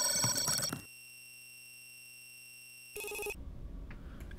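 Electronic intro sound effect: steady synthetic ringing tones with glitchy clicks that cut off suddenly about a second in, leaving a faint steady electronic tone, then a brief glitchy burst about three seconds in.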